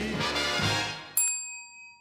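The song's last sung note fades out, then a single bright chime is struck about a second in and rings on, slowly dying away.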